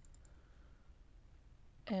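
A few quick computer mouse clicks in the first moment, then faint room noise.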